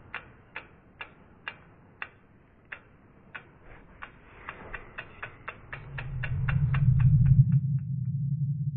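Logo-reveal sound effect: a run of sharp ticks, slow and uneven at first, speeding up to about five a second and stopping shortly before the end, while a low hum swells in over the last couple of seconds.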